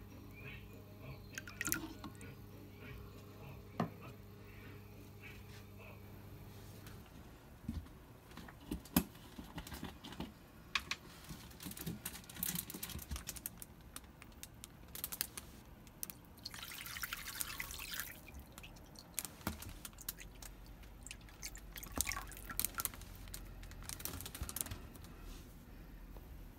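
A thin stream of water poured into a resin reptile water bowl, with trickling, splashes and drips, and scattered sharp knocks from handling the bowl and container.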